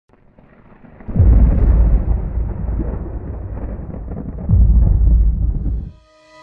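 Rumbling thunder with two heavy rolls, the first breaking about a second in and the second some three seconds later, then cutting off.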